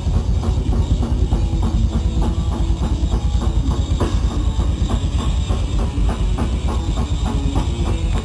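Live rock band playing loudly, with electric guitars over a fast, steady drum-kit beat and heavy bass.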